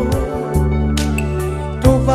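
Music: the band backing of a Malagasy song, a steady bass line with a few drum hits, in a short gap between sung lines.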